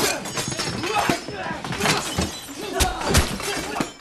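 Glass display cases shattering and breaking as bodies crash into them in a film fight, with a string of hits and crashes, several sharp ones through the middle, and a brief male voice near the start.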